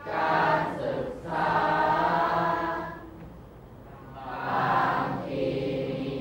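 A group of voices chanting a Thai verse in unison, in the drawn-out melodic recitation style of Thai poetry reading, with long held phrases and a short breath pause a little past the middle.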